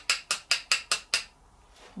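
Posca paint marker being shaken, its mixing ball clicking inside the barrel about five times a second; the rattling stops about a second and a quarter in.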